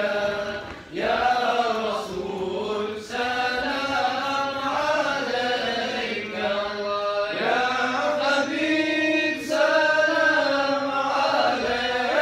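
A group of men's voices chanting a mawlid devotional text together from books, in a sustained melodic group chant without instruments, with short breaks between phrases.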